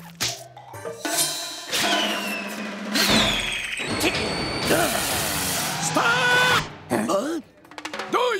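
Cartoon action sound effects over music: noisy whooshes, a thud about three seconds in, and a brief pitched vocal cry near six seconds.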